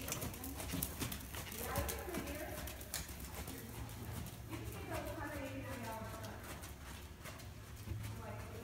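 Hoofbeats of a ridden horse on the sand footing of an indoor riding arena: a run of dull knocks, loudest in the first few seconds as the horse passes close, then fading as it moves away.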